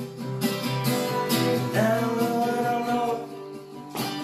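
Small acoustic guitar being strummed, with chords struck about once a second and ringing on between strokes.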